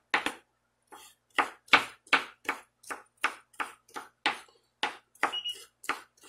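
Kitchen knife chopping dill pickles on a wooden cutting board: a steady run of sharp knife strikes on the wood, about three a second.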